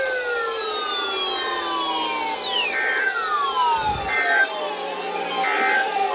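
Several overlapping siren-like tones, each winding steadily down in pitch, with a fresh one starting high partway through. There is a dull thump about four seconds in.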